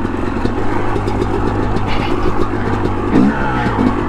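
A 2005 Yamaha YZ250's single-cylinder two-stroke engine running at low, steady revs on a rocky trail ride. A little past three seconds in, the revs dip and then climb again.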